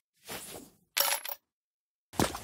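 Sound effect of a coin dropped into a piggy bank: a short soft rustle, then a single sharp metallic clink about a second in that rings briefly.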